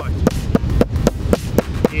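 Metal meat-tenderizer mallet pounding an octopus tentacle on a plastic cutting board: quick, regular blows about five or six a second. The tough leg is being beaten to soften it for bait.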